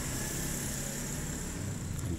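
Steady low rumble and hiss of background noise, with no distinct knocks or clicks.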